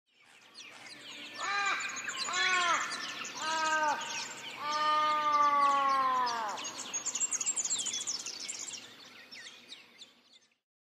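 Many small birds chirping, with a crow cawing three short caws about a second apart, then one long drawn-out caw that slowly falls in pitch. The sound fades in at the start and dies away near the end.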